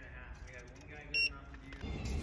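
A single short electronic beep about a second in, over faint background voices.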